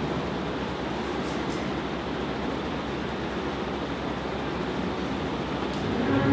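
Steady hiss of background noise: room tone and microphone hiss, with no voice or music.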